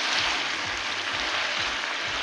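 Potatoes and green capsicum frying in an aluminium pot: a steady sizzling hiss.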